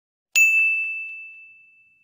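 A single bright ding sound effect from a subscribe-button animation: one bell-like tone that starts sharply and rings out, fading over about a second and a half.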